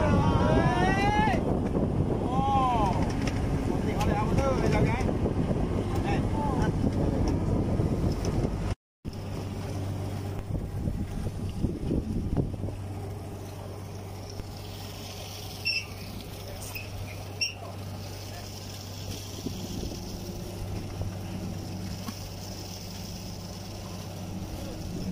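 Fishing boat's engine running with a steady low hum under splashing water as a purse-seine net is hauled in. Over the first few seconds men's shouted calls rise and fall. About nine seconds in the sound drops out briefly, then the engine hum carries on steadier and quieter.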